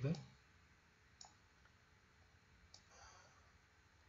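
Two faint, sharp computer mouse clicks, one about a second in and one near three seconds, over quiet room tone.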